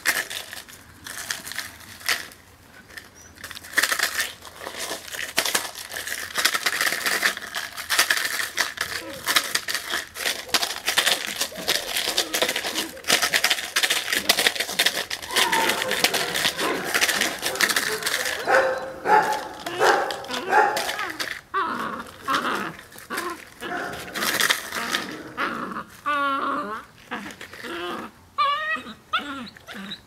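A puppy bites and tugs on a bite toy, and the plastic bottle inside it crinkles and crackles. About two thirds of the way in, short pitched vocal sounds join the crackling.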